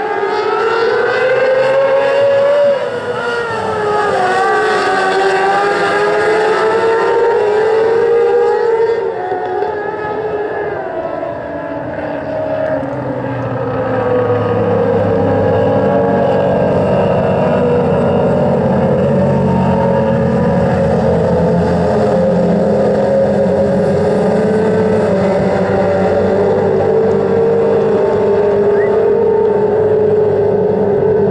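Engines of a pack of small open-wheel dirt-track race cars running hard together, several engine notes rising and falling as the cars work around the oval. The sound dips briefly about eleven seconds in, after which a deeper engine note joins in.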